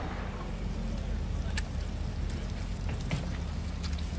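Low, steady hum of a Lexus LX 600's twin-turbo V6 running at low speed, with a few scattered light ticks of rain on wet pavement.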